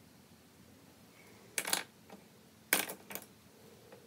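Small hard objects clicking against each other: a quick double click about a second and a half in, then two more sharp clicks about a second later.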